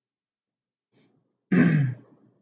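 A man clears his throat once, a short loud burst with a falling pitch about one and a half seconds in.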